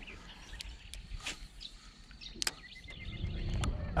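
Quiet outdoor ambience with a few scattered faint clicks and short, faint high chirps; a low rumble builds near the end.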